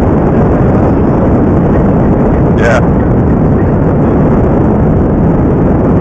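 Strong wind buffeting the camera's microphone: a loud, steady low rush.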